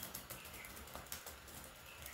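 Faint typing on a computer keyboard: a scatter of quick key clicks.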